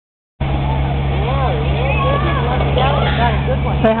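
Children's high voices calling and chattering over a steady low hum, with an adult's voice starting just before the end.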